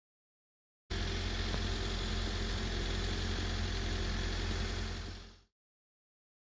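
Steady, loud rumbling noise with a heavy low end. It starts abruptly about a second in and fades out near the end.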